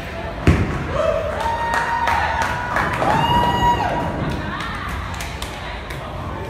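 A bowling ball lands on a wooden lane with a single thud about half a second in, followed by scattered clatter and several people's whooping calls that rise and then hold.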